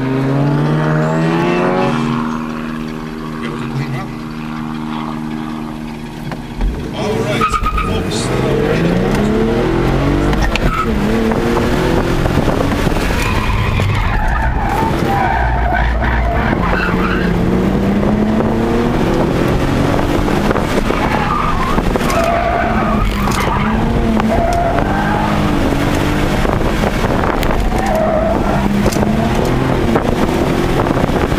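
2008 Infiniti G37 coupe's 3.7-litre V6, heard from inside the cabin, revving up and then holding steady. About seven seconds in there is a sudden thump and the car pulls away hard. From then on the engine note rises and falls again and again through the autocross course, with tyre noise and squeal.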